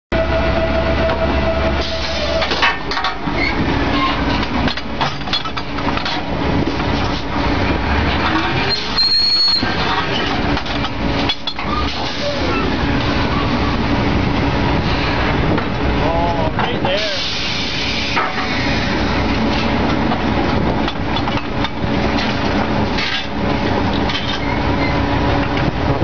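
Drilling rig machinery running loudly with a steady engine drone, and metal clanks from pipe handling at the rotary table.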